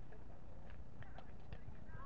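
Wind rumbling on the microphone, with a few short sharp taps about a second in and faint distant voices.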